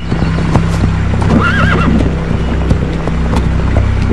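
Horses walking, hooves clip-clopping on a dirt trail, with a short wavering horse whinny about one and a half seconds in.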